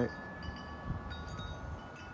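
Chimes ringing: several high tones at different pitches, each starting at a different moment and left to ring on, over a faint hiss.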